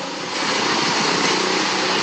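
A steady rushing engine noise with a faint hum, rising a little just after the start and holding, in the background of a voice recording.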